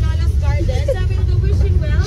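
Steady low rumble of a moving open-sided passenger shuttle, with voices of riders over it.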